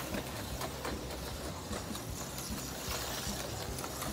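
HO-scale slot cars running laps on a plastic track: small electric motors whirring steadily, with many small clicks throughout.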